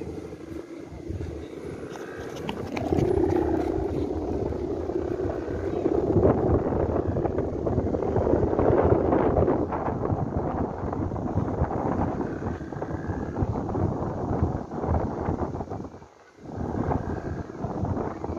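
Wind buffeting the microphone in gusts, with a low droning rumble underneath; it drops away briefly about two seconds before the end.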